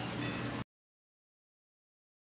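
Faint background noise with a low steady hum, which cuts off abruptly about half a second in to dead silence.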